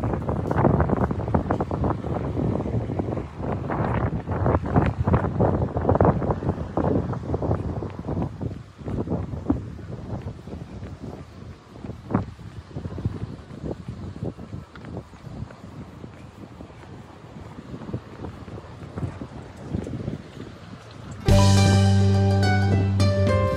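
Wind buffeting the microphone in gusts, heaviest for the first several seconds and then easing off. Background music starts suddenly near the end.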